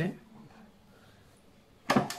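Quiet room tone, then near the end a single sharp, loud click as the Vijayalakshmi Smart tabletop wet grinder's power is switched on.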